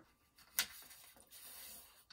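A sheet of paper rustling as it is folded diagonally and pressed flat by hand. There is one short crisp crackle about half a second in, then a soft sliding rustle.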